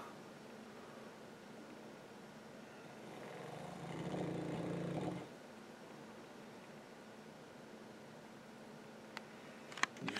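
A lightly sedated bull mastiff gives one low, drawn-out breathing sound from the throat about four seconds in, over quiet room tone. Two faint clicks come near the end.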